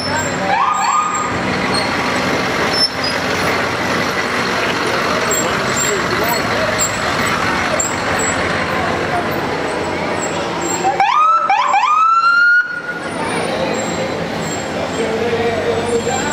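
Emergency-vehicle siren giving short rising whoops: one brief whoop just after the start, then a louder burst of several quick whoops a little after ten seconds that cuts off suddenly. Crowd voices and idling parade vehicles run underneath.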